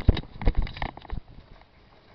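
A quick run of irregular close knocks and thumps that dies away after about a second, leaving near quiet.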